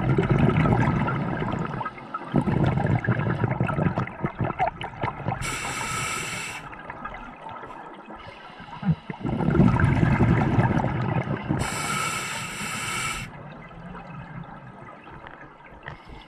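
Scuba diver breathing through a regulator underwater: long gurgling rushes of exhaled bubbles, and two inhalations heard as a hiss through the regulator, about six seconds apart.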